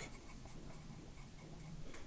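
Pencil writing a short word on a sheet of paper, faint.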